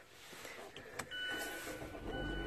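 A single sharp click about a second in, followed by a faint steady high electronic tone.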